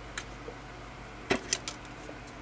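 A few light clicks and taps of hard plastic model-kit parts being handled, the sharpest a little past halfway, over a steady low hum.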